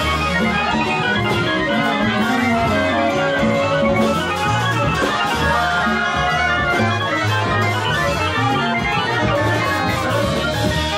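A street jazz ensemble of saxophones and trumpets playing together over a walking low line from two upright basses.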